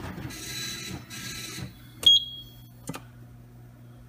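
Fire alarm control panel being reset: a sharp key click with a brief high beep about two seconds in, then a second click, over a steady electrical hum. Before them, about a second and a half of soft hissing noise.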